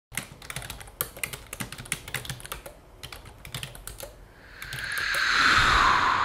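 Fingers typing on a laptop keyboard: a quick, irregular run of key clicks for about four seconds. Then a swelling rush of noise builds and is loudest near the end.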